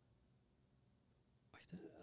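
Near silence: quiet room tone, then a man softly says a word near the end.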